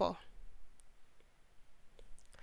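A voice trails off at the very start, then a pause of faint room tone with one or two soft, brief clicks.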